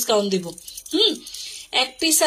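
A brief metallic jingle of jewelry pieces rattling against each other, with a person talking over it.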